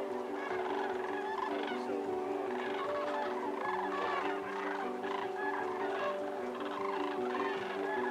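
A flock of sandhill cranes calling, many overlapping calls throughout, over a bed of steady held tones.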